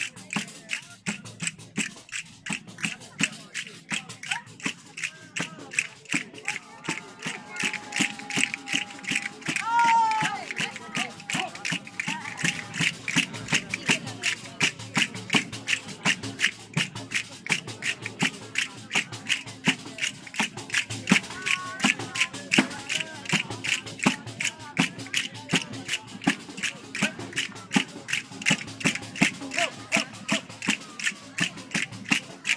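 Tammorra, the large jingled frame drum of Campanian folk music, beating a steady driving tammurriata rhythm, its jingles rattling on every stroke, with castanets clacking along. A voice holds a long note for a few seconds about a third of the way in.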